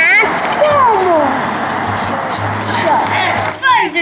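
A young child's voice calling out in sliding, mostly falling pitches, over background pop music and a steady rushing noise.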